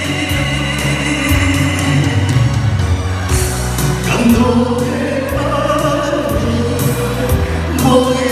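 Live singing into microphones over amplified backing music with a steady bass and beat, played through a hall PA system.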